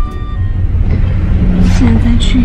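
Car interior noise heard from the back seat: a steady low rumble that starts abruptly as the music cuts off. A woman's voice comes in over it near the end.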